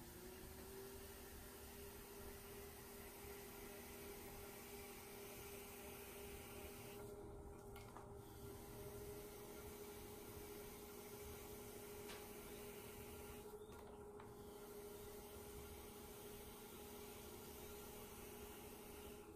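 Faint, steady hum of an electric pottery wheel's motor, rising in pitch at the start as the wheel comes up to speed and then holding even while a bowl is trimmed on it.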